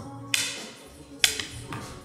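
Two sharp clicks about a second apart as plastic board-game pieces are handled in the game box.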